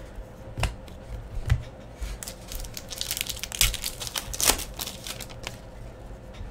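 Trading cards being handled and flipped by hand over a table: a couple of light taps, then a stretch of crinkly rustling and clicking from about two seconds in, the loudest in the middle.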